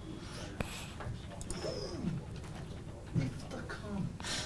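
Faint, scattered sounds of a person's voice, including a short falling hum, over quiet room tone. A sharp click comes about half a second in.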